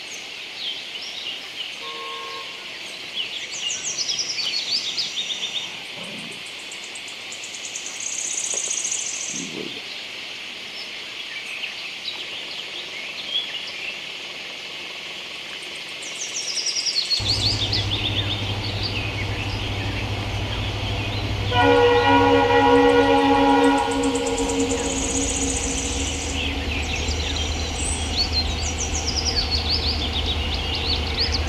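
Birds chirping and calling over a steady outdoor background. About halfway through, a diesel freight train's low rumble starts suddenly, and a few seconds later the locomotive sounds its horn for about two seconds, the loudest sound here. Birds go on calling over the train.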